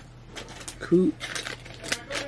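A man's short hummed grunt about a second in, amid scattered small clicks and rustles.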